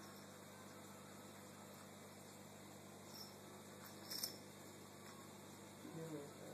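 Near silence: room tone, with one faint brief rustle about four seconds in.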